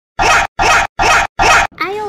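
An inserted sound effect: four identical short, scratchy bursts, evenly spaced at about two and a half a second. Near the end a voice breaks in with a drawn-out exclamation.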